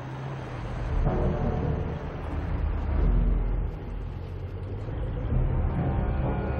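Car engine running, growing louder about a second in and again around three seconds, with dark film-score music underneath.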